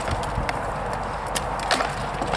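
Rattan swords striking shields and armour in armoured sparring: a handful of sharp knocks, with a quick run of them near the end, over steady background noise.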